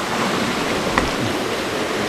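Shallow rocky stream rushing over stones: a steady wash of running water, with one faint tap about halfway through.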